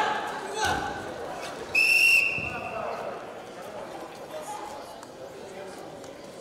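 A thud of a body hitting the wrestling mat, then about two seconds in one short, shrill blast of the referee's whistle, the loudest sound here, stopping the action, with voices in an echoing sports hall.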